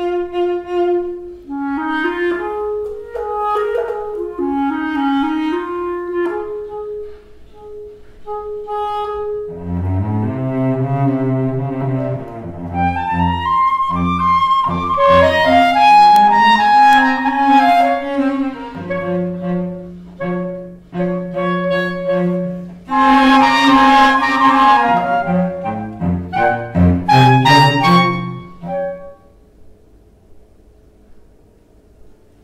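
Clarinet and cello duo playing a contemporary polytonal study, the two instruments exploring different keys on top of one another. A single melodic line at first is joined by a lower second part about a third of the way in, and the piece stops near the end.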